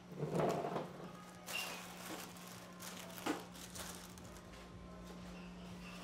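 A few short rustling swishes of pleated iridescent wing fabric as it is swirled, the loudest about half a second in, over a steady low electrical hum.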